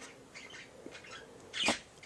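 Faint rustling as a small long-haired dog shifts about on bedding close to the microphone, with one short, sharp sound near the end.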